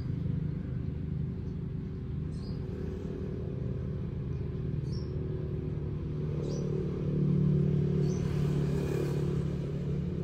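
A steady low motor hum made of several pitched tones, swelling a little about seven seconds in, with short high chirps about once a second over it.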